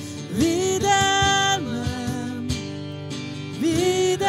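Live worship song: a woman sings with acoustic guitar and cajón. She slides up into a long held note about half a second in, steps down to a lower held note, and slides up into another long note near the end, over a steady beat.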